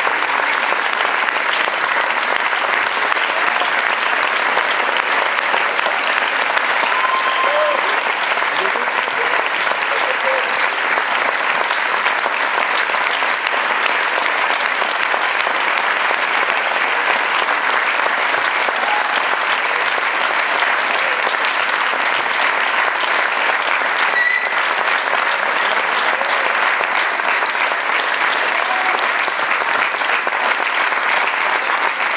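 Large theatre audience applauding, a dense clapping kept up steadily without let-up, with a few voices calling out over it.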